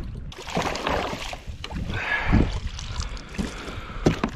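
Water splashing and dripping as a snapper is scooped up in a landing net and lifted aboard a kayak, with a few knocks against the plastic hull.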